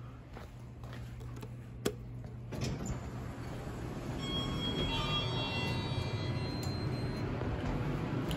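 Montgomery KONE hydraulic elevator doors sliding open after a sharp click, their noise rising from about two and a half seconds in, with a few faint high tones in the middle.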